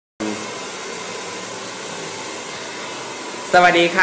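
Hair dryer blowing steadily: an even hiss with a faint steady whine.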